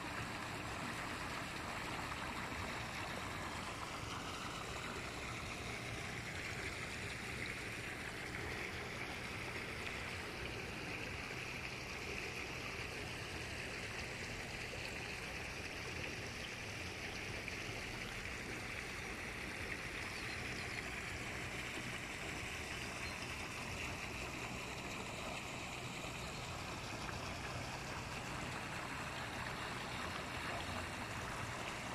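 Water gushing from a pipe outlet into a shallow pond, a steady rushing and splashing that does not let up.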